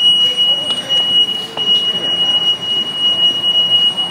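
Metro faregate alarm sounding one continuous high-pitched tone, set off by a person climbing over the gate without tapping a fare card.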